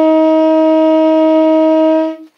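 Tenor saxophone holding one long, steady note, the last note of the solo.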